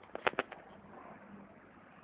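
Four or five sharp clicks in quick succession in the first half second, then only faint background noise.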